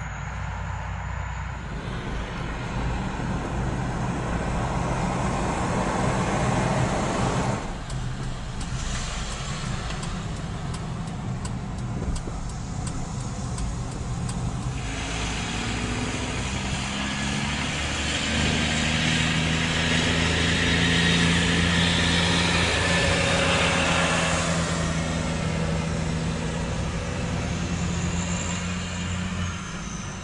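Heavy truck engine running steadily as it tows a building on a house-moving trailer, with tyre and road noise. It grows louder as it passes close, loudest about twenty seconds in.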